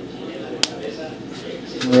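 A single sharp click about half a second in as a snap-fit clip of the Samsung Galaxy Mega's plastic midframe pops free, over a faint low background hum.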